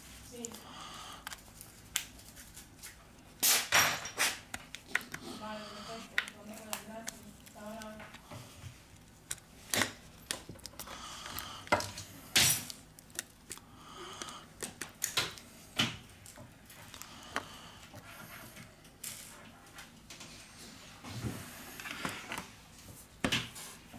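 Plastic opening pick scraping along the edge of a Meizu M8c's plastic back cover, with a string of sharp, irregular clicks as the cover's clips snap free.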